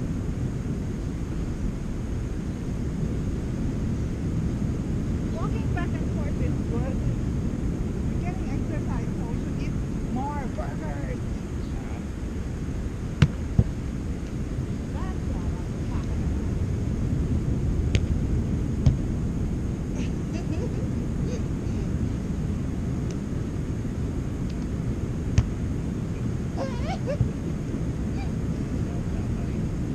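Steady low rumble of wind on the microphone, with faint distant voices now and then and a few sharp knocks: two close together about 13 seconds in, two more around 18 to 19 seconds, and two near the end.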